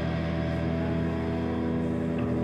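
Amplified electric guitars and bass holding a sustained chord, with no drum hits.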